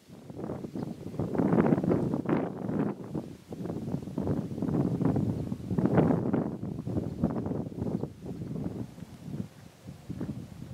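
Wind buffeting the camera microphone in gusts, a rough rumbling rush that surges and eases, loudest around two and six seconds in.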